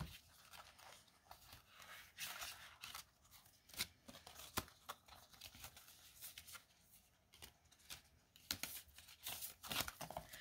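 Faint rustling and light snaps of paper prop banknotes and a plastic binder envelope being handled, the bills pulled out and fanned by hand, with scattered small clicks.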